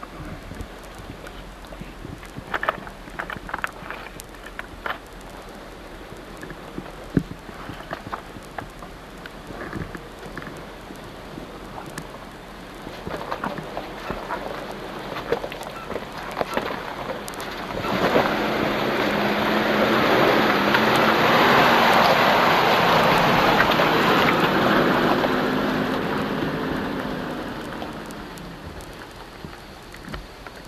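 Toyota 4x4 driving slowly over loose rock. Scattered crackles of stones under the tyres come first. About two-thirds of the way in, a louder swell of tyre crunch and engine hum builds as the truck comes up close, then fades near the end.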